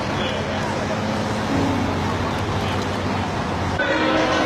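Steady city street noise: traffic with indistinct voices in the background.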